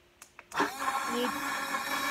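Aoozi portable battery blender switched on: two quick clicks of its button (the double click that starts it), then about half a second in its small motor starts and runs steadily with a whine, blending the drink in the jar.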